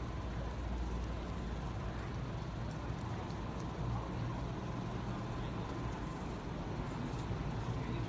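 Steady low hum under a continuous outdoor background noise, with no distinct events.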